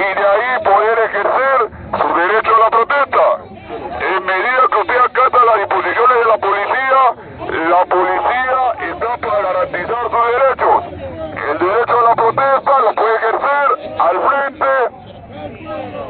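Loud, continuous shouted speech with a distorted, radio-like quality, from a police officer speaking through a handheld megaphone.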